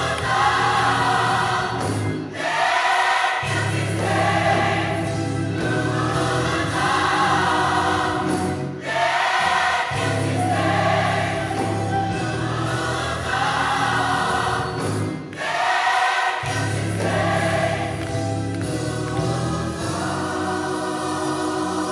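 Gospel choir singing with instrumental backing, in long phrases over a steady bass, with brief pauses between phrases about every six seconds.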